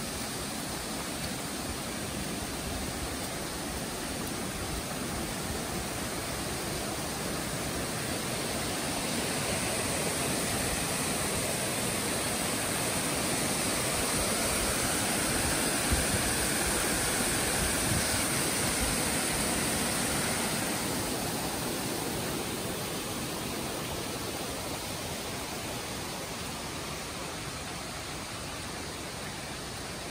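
Rushing water of a rocky forest creek, a steady rush that grows louder through the middle as a cascade over the rocks comes close, then eases back.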